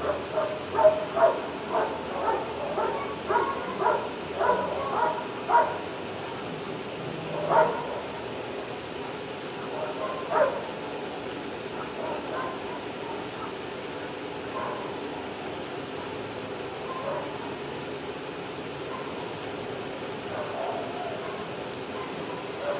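A dog barking repeatedly, about two barks a second for the first six seconds, then a few single barks, with fainter ones later.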